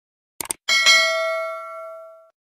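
A quick double click, then a bright bell ding struck twice in quick succession that rings on and fades away over about a second and a half.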